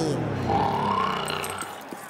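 A cartoon cat snoring loudly: one long, drawn-out snore with a rising pitch in the middle, fading away in the second half.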